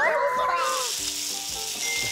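Meat sizzling on an electric grill pan, a steady frying hiss. Over it in the first second is a gliding, sing-song edited sound effect or music.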